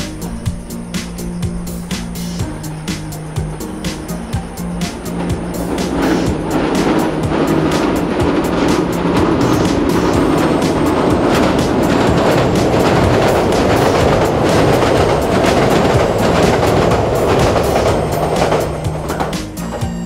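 Background music with a steady beat over a passing train: a rushing rumble swells from about five seconds in, stays loud, then falls away near the end.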